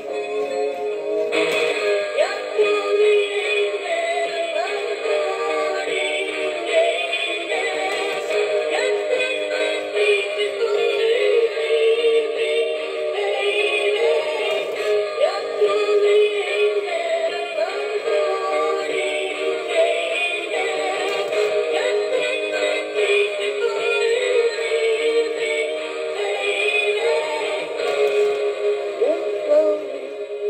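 Rockin Singing Bass animatronic fish plaque playing a song through its small built-in speaker: recorded singing with backing music, thin and tinny with almost no bass.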